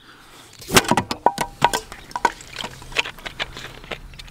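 A plastic soda bottle is picked up and its screw cap twisted open. It makes a quick run of sharp plastic clicks and crackles, with a brief squeak, then a few scattered clicks.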